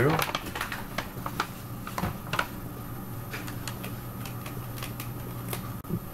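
Paper being handled: a rolled paper tube pushed and slid inside a paper barrel, giving irregular light clicks and rustles over a steady low hum.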